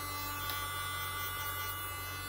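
Electric nail drill (e-file) handpiece running at a steady speed with its control unit set to 30, giving an even motor whine over a low electrical hum.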